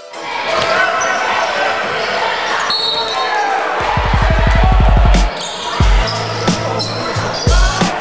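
Gym crowd noise with voices during a basketball game, and a basketball bouncing on the hardwood court in single heavy thumps in the second half.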